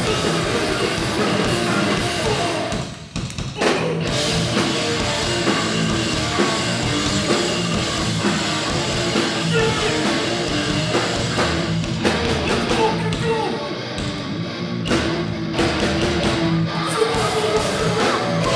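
Hardcore punk band playing live: distorted electric guitars and a drum kit, with vocals into the microphone. The band drops out briefly about three seconds in, then comes back in at full volume.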